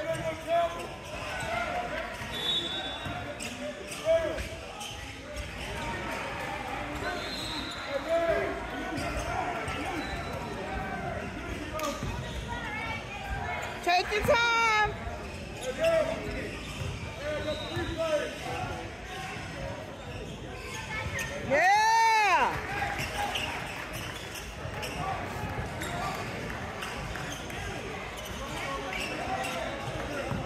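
A basketball bouncing on a hardwood gym floor a few times, over the echoing chatter of spectators in a large gym. There is one loud, brief, high-pitched squeal a little over two-thirds of the way in.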